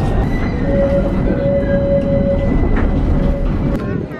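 Tram running, heard from inside the passenger car: a steady low rumble of the ride, with a steady whine that comes in about half a second in and holds for about two seconds.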